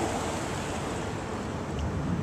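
Steady rushing hiss of wind buffeting the microphone outdoors, even throughout, with no engine note.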